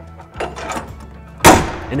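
Sheet-metal service door of a Kubota GL14000 generator enclosure swung down and slammed shut: a soft rush as it comes down, then one sharp slam about one and a half seconds in that rings briefly.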